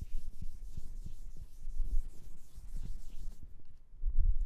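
Blackboard eraser rubbed across a chalkboard in repeated back-and-forth strokes, stopping shortly before the end.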